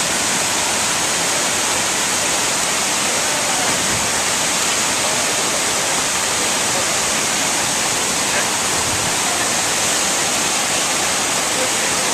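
Waterfall pouring over a rock ledge close by: a loud, steady, unbroken rush of falling water.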